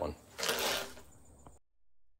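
The word "one" at the start, then about half a second of rustling from a person moving and getting up, a small click, and the audio cutting abruptly to silence at an edit.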